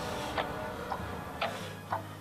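Clock-like ticking, about two ticks a second, over a low sustained music drone.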